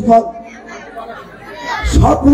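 Speech: a man's voice amplified through a stage microphone and loudspeakers, loudest at the start and near the end, with chatter behind it.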